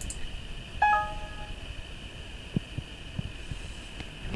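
A short electronic chime of several tones sounding together about a second in and fading within about half a second, over a steady high-pitched hum; a few faint low knocks follow later.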